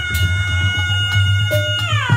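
A tarompet, a Sundanese double-reed shawm, holds one long nasal note and then slides down in pitch near the end, over a steady low hum.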